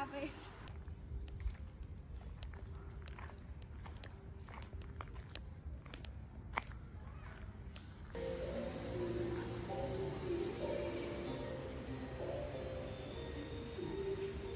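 Footsteps on a gravel path, irregular light crunches and clicks over a quiet outdoor background. About eight seconds in, a cut brings a louder, fuller background of indistinct voices and music.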